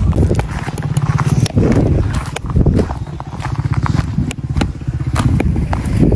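Wind buffeting the microphone with a rough low rumble, broken by scattered sharp knocks a fraction of a second to a second apart.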